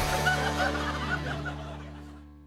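Short bursts of laughter over a held, low music chord; the laughter stops after about a second and a half and the chord fades away toward the end.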